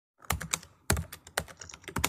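Computer keyboard typing sound effect: a quick, irregular run of key clicks in small clusters.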